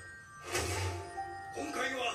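Episode soundtrack playing quietly: background music with held tones, and a man's voice speaking near the end.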